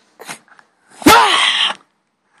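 A person's sudden loud, breathy vocal burst about a second in, rising then falling in pitch and lasting under a second.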